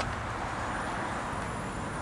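Steady outdoor background noise: an even hiss with a low rumble and no distinct events.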